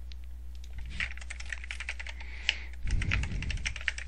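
Typing on a computer keyboard: a rapid run of keystrokes starting about a second in, over a steady low electrical hum.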